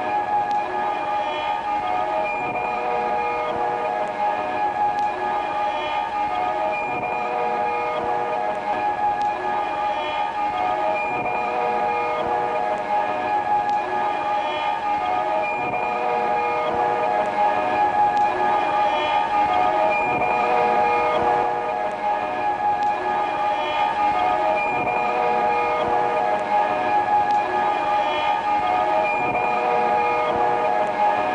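A bow drawn across a copper object, giving sustained metallic tones at several pitches at once. The tones are layered on a tape loop that comes round about every four and a half seconds, building a dense, slowly changing drone.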